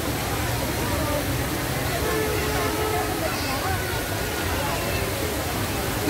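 Steady rush of water from a large multi-jet fountain, mixed with the babble of many voices in a crowd.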